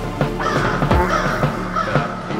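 A crow cawing, starting about half a second in, over a drum and bass beat with regular kick and snare hits.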